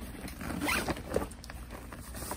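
Zipper of a Babolat Pure Drive 12-racket tennis bag's middle compartment being pulled open in a few short pulls.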